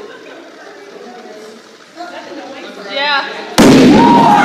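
Liquid nitrogen bottle bomb bursting inside a barrel of ping-pong balls: one sudden, very loud bang about three and a half seconds in, after low crowd chatter. Boiling nitrogen builds pressure in the sealed bottle until it bursts.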